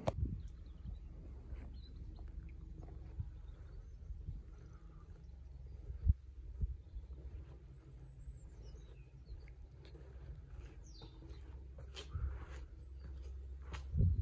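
Quiet outdoor farmyard ambience: a steady low rumble with faint bird chirps and a few soft knocks, the clearest about six seconds in.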